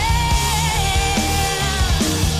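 A woman singing live into a microphone, belting one long held note that sags slightly in pitch, over loud band backing with drums.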